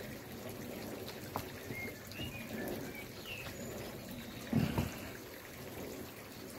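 Garden ambience: a steady background hiss with a few short, high bird chirps, and a couple of low thumps a little after halfway.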